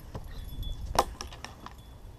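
Light metallic clinks and jingles from a German shepherd's collar and leash fittings as she shifts and turns around in a plastic tub, with one sharper click about a second in.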